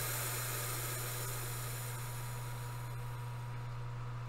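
A long, slow breath blown out in a breathing exercise: a steady breathy hiss that fades away near the end.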